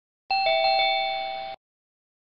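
A two-note bell chime, like a doorbell ding-dong: a higher note then a lower one, rung twice in quick succession, then cut off abruptly.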